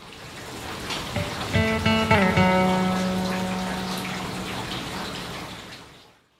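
Shower water spraying steadily, fading in at the start and out near the end. Background music plays over it, with a note that steps, dips, then holds steady for a few seconds.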